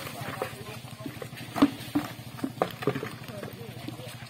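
Buckets knocking and clattering as they are handled and set down on a wet road, in irregular sharp knocks with the loudest about a second and a half in, over the voices of a crowd of people.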